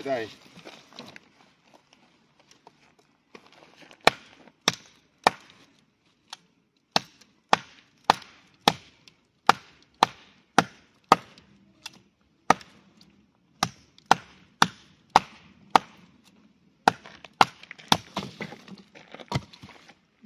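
A heavy fixed-blade knife chopping into a thin standing tree trunk. After a quiet few seconds comes a steady run of about two dozen sharp chops, nearly two a second, as the blade bites into and slices the wood.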